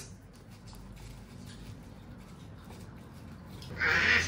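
Faint handling sounds: light rustles and ticks from hands working a sheet of nori and sticky sushi rice, with a brief louder rustle near the end.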